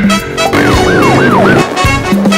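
A siren wailing in quick rising-and-falling sweeps, about four in a second, over loud trailer music with a pounding beat.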